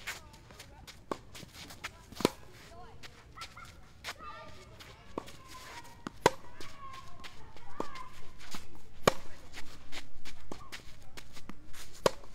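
Tennis ball struck back and forth in a baseline rally: sharp pops of the ball on a racket's strings, including the near player's Head Extreme MP 2022, with softer bounces on the court between them, spaced about a second or so apart.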